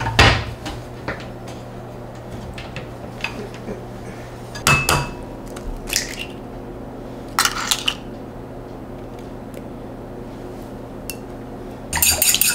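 A few separate knocks and clinks of crockery as eggs are cracked against the rim of a ceramic bowl. The loudest knock comes at the very start, another with a short ring about five seconds in, and a quick cluster of knocks near eight seconds.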